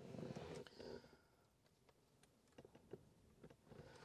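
Near silence with faint handling noise from a plastic overhead map-lamp console: soft rustling in the first second, then a few small plastic clicks as the unit and its wiring connector are fitted.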